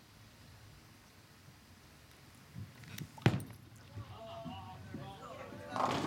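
A bowling ball thumps onto the wooden lane about halfway through and rolls down it. Near the end it crashes into the pins for a strike, a loud clatter of pins.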